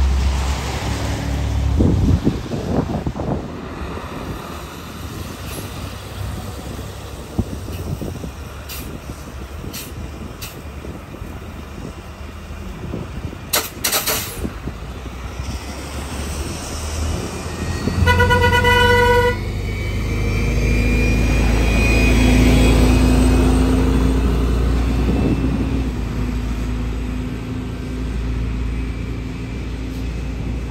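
Transit buses driving on a wet road. A short sharp burst of noise comes a little before the middle, then a single horn toot lasting just over a second. After that a bus engine pulls away with a rising whine.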